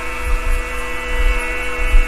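Steady electrical mains hum with many overtones, over an uneven low rumble.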